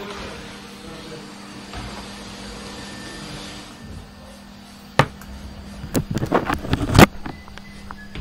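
Canister vacuum cleaners running steadily for about four seconds, then a few sharp knocks and clatters, the loudest just before the end.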